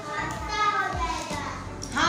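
Young children's voices chanting a nursery rhyme together, somewhat quieter than the louder voices on either side.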